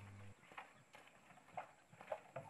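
Near silence with faint, irregular soft knocks a few times a second: footsteps on packed earth and the blue plastic water bottles bumping as a man carries them. A low hum cuts off just after the start.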